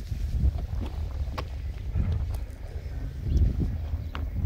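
Wind buffeting the microphone: an uneven, gusting low rumble, with a few faint clicks.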